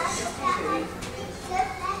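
Children's voices and chatter in the background, with short high calls coming and going.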